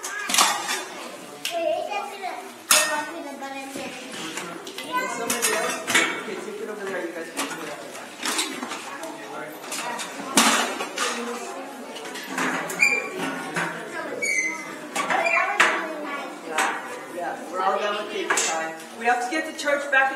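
Repeated clinks and clatters of small hard objects being handled and set down, mixed with children's murmured chatter.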